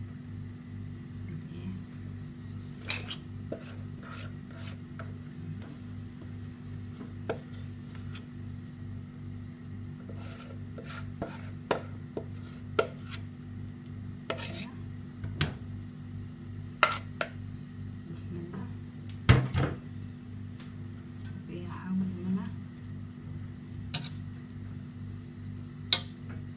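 Cake batter poured from a metal pot over apple slices in a baking pan, with scattered clinks, knocks and scrapes of metal cookware and a utensil; the loudest knock comes about 19 seconds in. A steady low hum runs underneath.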